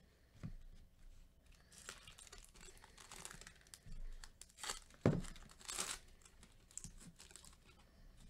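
Foil wrapper of a Topps Chrome baseball card pack being torn open and crinkled by gloved hands: a run of irregular crackling tears, loudest about five seconds in.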